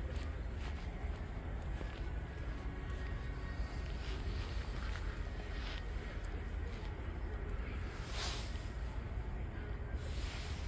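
Room tone of a large exhibition hangar: a steady low hum with faint voices in the background and a brief swish about eight seconds in.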